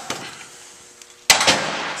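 One sharp metal clank with a short ring a little over a second in, from the wrench on the arbor nut of an Ammco brake lathe as the nut clamping a brake drum is loosened.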